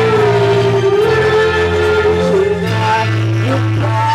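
Live rock band playing: electric guitars over drums, with a long held low note underneath and a sliding, wavering lead melody, climbing to a higher note near the end.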